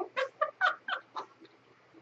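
A woman laughing in a quick run of about five short, high-pitched bursts that die away after just over a second.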